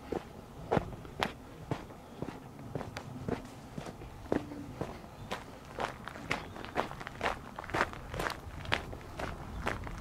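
Footsteps on a gravel and dirt path, a steady walking pace of about two crunching steps a second.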